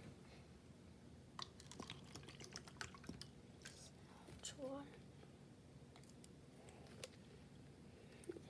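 Faint sound of bottled water being poured from a plastic bottle into a plastic cup, with small clicks and taps of the plastic over the first few seconds.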